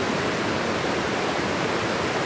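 Waterfalls rushing down a rock cliff: a steady, even hiss of falling water.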